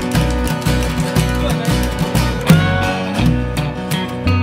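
A live roots band playing an instrumental passage: strummed acoustic guitar, electric guitar and upright bass over a steady beat.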